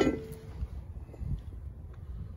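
Wind buffeting the microphone with an uneven low rumble, and faint scattered ticks. At the start, a single ringing tone left over from a clink dies away within about half a second.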